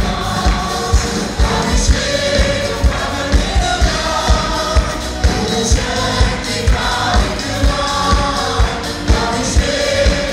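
A worship team of men and women singing a Malayalam worship song together through microphones, with band backing and a steady low beat.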